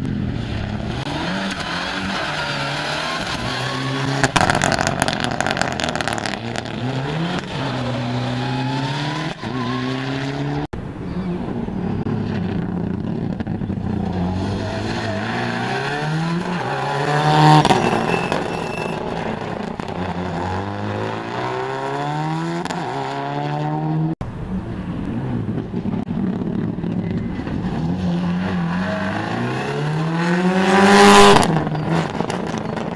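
Rally cars, Subaru Impreza WRX STIs among them, driven hard past the roadside on a gravel stage, their turbocharged flat-four engines revving up and down through gear changes and lifts. The passes are cut together abruptly; the loudest comes about two-thirds of the way through, and another car closes in right at the end.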